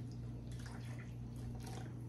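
Soda being poured from a plastic bottle into a plastic cup: a faint trickle and dribble of liquid, over a steady low hum.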